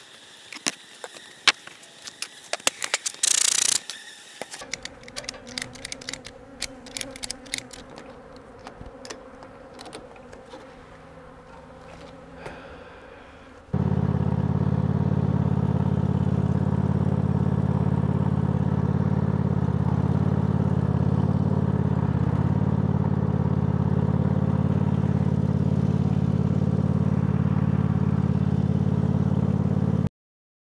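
Scattered clicks and knocks from hive work, with a short hiss about three seconds in. About fourteen seconds in, a riding lawn tractor's engine comes in at once and runs steadily.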